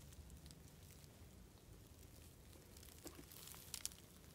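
Near silence: quiet outdoor stillness with a few faint short clicks in the last second.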